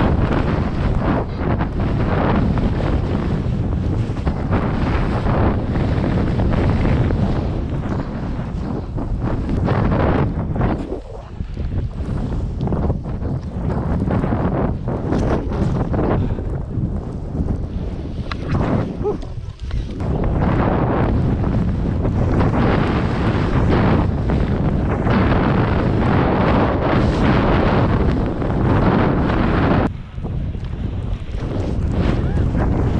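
Wind rushing loudly over an action camera's microphone during a downhill ski run, mixed with the hiss of skis sliding through soft snow. It eases off briefly twice along the way.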